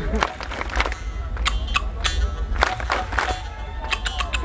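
Live Rajasthani folk music: sharp wooden clacks of khartal clappers struck in quick, irregular strokes over a steady low rumble.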